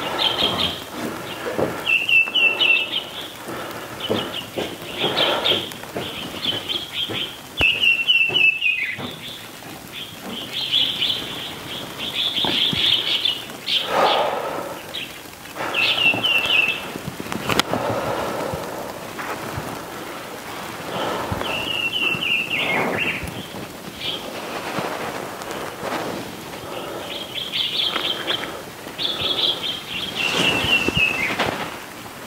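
Songbirds chirping, with one short falling trill repeated every several seconds over a steady soft background hiss.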